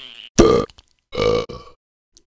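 A man's voice making a short grunt, then two loud, rough burps about three quarters of a second apart.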